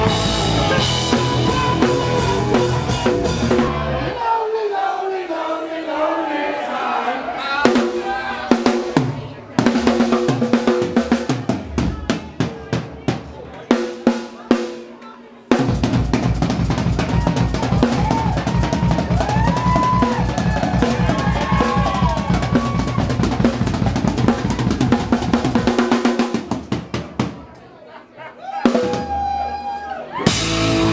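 Rock drum kit solo played live, with snare, toms, bass drum and Zildjian and Paiste cymbals. The full band holds a chord for the first few seconds. Then the drums play alone in separate strokes and fills with short gaps, and from about halfway they play a fast, unbroken barrage. The band comes back in near the end.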